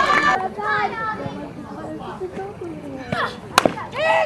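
Players and spectators chattering and calling out, then a single sharp crack of a bat hitting a softball near the end.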